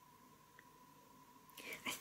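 Near silence: quiet room tone with a faint steady high-pitched tone. Soft breathy sounds come in the last half second, leading into soft-spoken speech.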